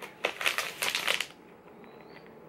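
A plastic treat pouch crinkling as it is handled and turned over: a quick run of crackles that stops a little past halfway.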